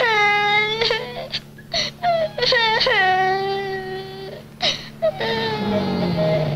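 A young boy crying in long, drawn-out wails, each starting high and dropping, three main stretches, over the steady low hum of a car engine.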